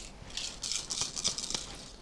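Cowrie shells shaken together in cupped hands, a dry rattling clatter lasting about a second and a half. This is the shaking before the shells are cast in cowrie-shell divination.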